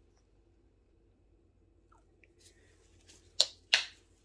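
Near silence, then two sharp clicks close together near the end as the paint tube is handled and put away.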